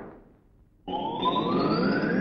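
Fight-scene sound effect: after the last punch dies away there is a brief hush, then about a second in a whistling tone starts suddenly and climbs steadily in pitch.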